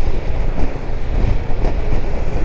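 Wind rushing over the microphone of a rider on a moving Zontes 350E scooter, a steady noise with the scooter's running and road noise underneath.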